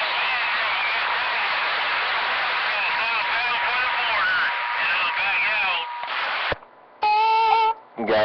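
CB radio receiver carrying garbled voices of several stations talking over one another through static, with a steady whistle underneath. About six and a half seconds in the signal cuts off with a click, and near the end a short steady beep tone sounds.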